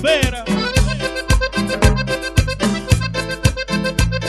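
Cumbia band playing an instrumental passage: an accordion melody over bass and a steady percussion beat of about two strikes a second, with a brief wavering, sliding note at the start.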